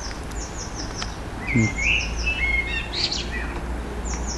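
Small garden songbirds singing. One repeats a quick phrase of about five high, falling notes several times, and a second bird adds lower chirps in the middle, over a low steady rumble.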